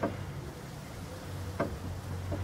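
Two light metal clicks from the poise being nudged along the steel beam of an old mechanical platform scale, one at the start and one about one and a half seconds in, over a low steady hum.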